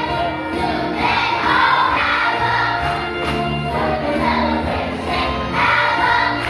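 A children's choir singing together with instrumental accompaniment.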